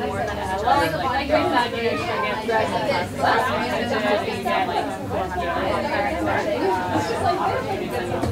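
Many people talking at once at several tables: a steady chatter of overlapping conversations in which no single voice stands out.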